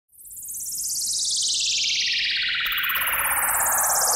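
A synthesized intro sound effect: a high, shimmering tone fades in and glides steadily downward in pitch. A second falling sweep starts about two and a half seconds in, overlapping the first.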